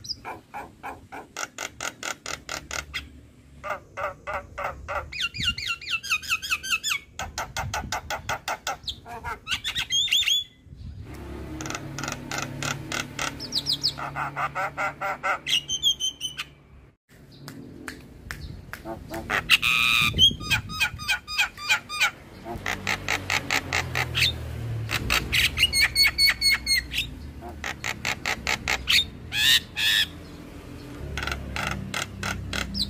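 Javan myna (jalak kebo) singing in rapid runs of repeated short notes, several a second, broken by brief pauses, with a few gliding whistles between runs.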